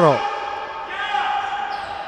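A handball bouncing on the sports-hall floor as a player dribbles. A brief voice call comes about a second in.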